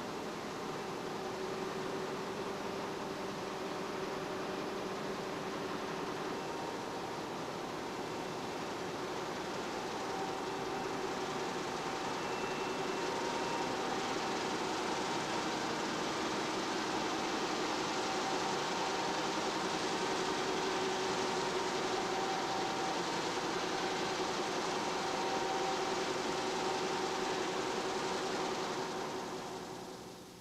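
High-speed commercial web offset press running: a steady machine noise with a few faint humming tones, fading out near the end.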